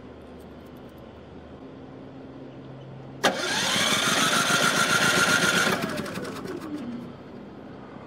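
Champion 3400-watt inverter generator's small engine cranking on remote start in the cold, firing loudly for a couple of seconds, then failing to catch and winding down with a falling pitch until it stops. It is a failed cold-start attempt after a month of sitting unused.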